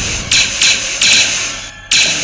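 Star Wars-style blaster shot sound effects: several shots in quick succession in the first second, thinning out, with a fresh shot right at the end.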